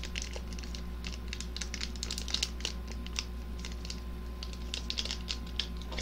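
Small foil instant-ramen soup sachet crinkling and crackling in the hands as it is handled, a quick irregular run of small crackles and clicks over a steady low hum.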